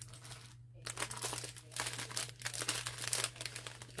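Plastic packaging crinkling as it is handled. It is soft at first and grows busier and more continuous from about a second in.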